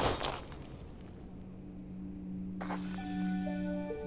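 The fading end of a heavy thud into sand, then a film score: a low sustained chord comes in, a shimmering swish sounds about two and a half seconds in, and bell-like notes enter one after another above it.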